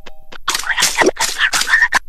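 Cartoon croaking, gurgling vocal sound effect. A quick run of rough bursts starts about half a second in and cuts off at the end.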